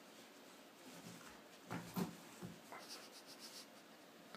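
Malamute puppy scratching itself on a carpet with its hind paw: soft rubbing, two knocks about halfway through, then a fast run of light high rattles.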